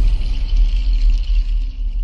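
Logo-ident sound design: a deep, sustained bass rumble with a faint high shimmer above it, easing off near the end.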